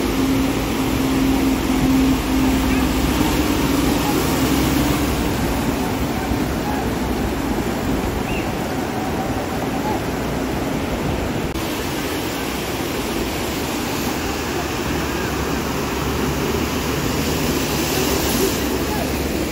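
Muddy floodwater rushing in a loud, steady torrent over rocks and across the road, with a steady low drone during the first five seconds or so.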